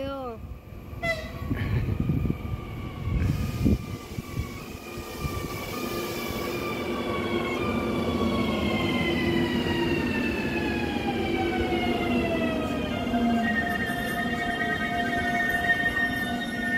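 Two coupled Škoda RegioPanter electric multiple units (ČD class 650) running in along the platform: their electric traction whine, several tones together, falls steadily in pitch as the train slows, over the rumble of the wheels on the rails, then settles into steady tones for the last few seconds.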